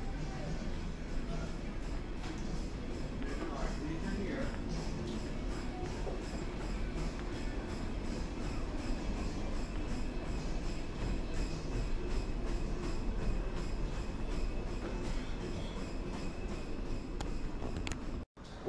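Steady background rumble of a large gym room, with faint background music and a regular light tapping of footsteps as someone walks.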